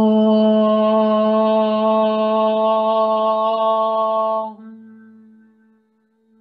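A woman's voice chanting a single long Om on one steady pitch, held for about five seconds, then closing into a soft hummed "mm" that fades away near the end.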